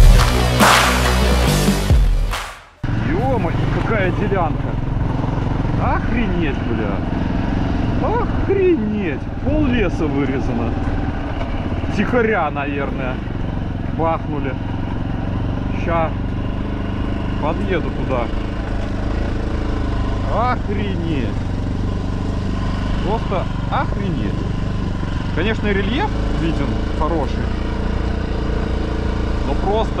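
Music for the first few seconds, cut off abruptly about three seconds in. Then a Minsk X250 dirt bike's single-cylinder engine runs steadily while riding, its pitch rising and falling again and again as the throttle is worked.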